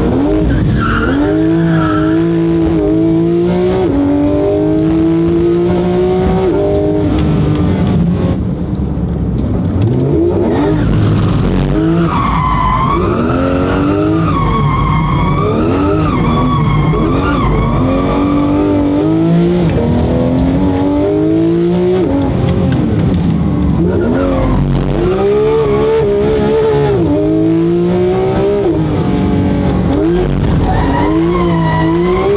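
Porsche 911 GT3 RS flat-six engine revving up and down again and again through the gears, with tyres squealing as the cold tyres slide in a drift, heard from inside the cabin.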